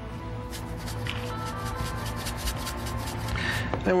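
A spice shaker shaken over a tub of ground meat: a rapid run of dry ticks lasting about three seconds, over steady background music.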